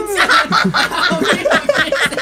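People laughing hard in a run of quick, choppy chuckles.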